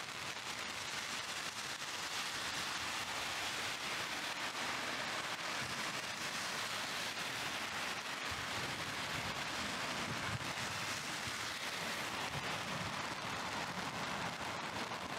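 Heavy downpour: dense, steady rain hiss.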